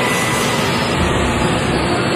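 Jet aircraft engines running, a loud steady noise.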